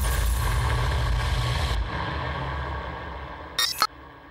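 Sound effect of a TV channel's logo ident: a sudden deep boom with a rushing hiss as the logo appears, dying away over about three seconds, then a short bright swish shortly before the end.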